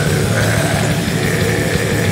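Death metal song: a man's deep guttural growl over heavily distorted guitars and drums, loud and unbroken.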